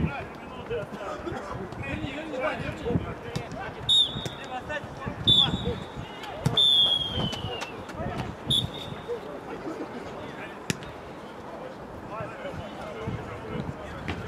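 Referee's whistle blown in short blasts, about four seconds in and again a second later, then one longer blast falling in pitch, and a last short one near eight and a half seconds. Players shout and the ball is kicked around them on the artificial pitch.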